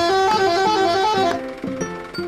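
A multi-tone musical truck horn, in the Indonesian 'telolet' style, plays a quick warbling melody of rapidly alternating notes and stops about a second and a half in. Background music continues under it.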